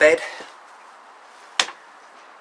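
A single short, sharp knock about one and a half seconds in, against a quiet background.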